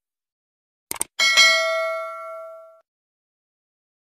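Subscribe-button animation sound effect: a quick double mouse click about a second in, then a bright notification-bell ding that rings out and fades over about a second and a half.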